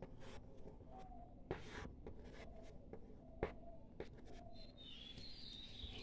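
Pencil drawing on paper: faint scratchy strokes with a few sharper ticks.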